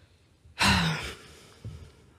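A woman's sigh about half a second in: a breathy exhale with a short voiced start, fading within half a second, heard close on a studio microphone.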